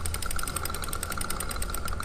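Winch ratchet pawls clicking in a rapid, even run as the captive daggerboard winch is cranked round with a winch handle to lift the daggerboard, over a steady whine.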